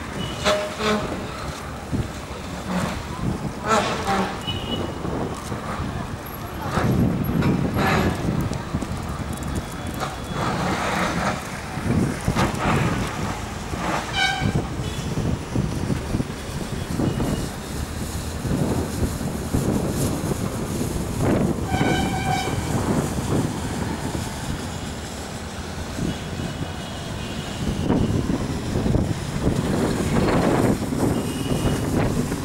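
Noise of road traffic, with vehicle horns tooting now and then; the two clearest toots come about halfway through and again about two-thirds of the way through.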